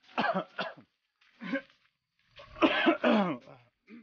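A man coughing and clearing his throat in three bouts: a short double one at the start, a brief one about a second and a half in, and the longest and loudest near the end.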